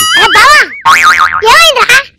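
A cartoon-style springy "boing" sound effect: starts suddenly, its pitch wobbling rapidly up and down for about a second.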